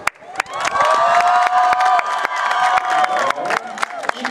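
A large crowd clapping and cheering, with long held shouts over many sharp hand claps. It swells up about half a second in.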